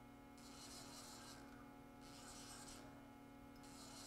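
Near silence: the faint, steady hum of a powered-on Haas Mini Mill 2 CNC mill, with a faint high hiss that comes and goes about once a second.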